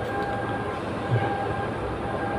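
Steady mechanical hum with a few faint, steady whining tones above it.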